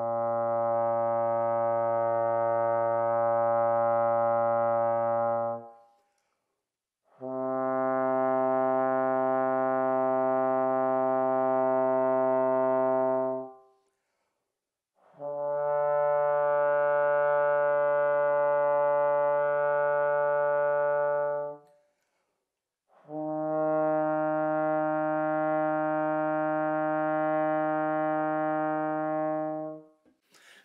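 A trombone playing four long tones, the opening notes of a B-flat major scale, rising step by step. Each note is held steady for about six seconds, with a short break for a breath between notes.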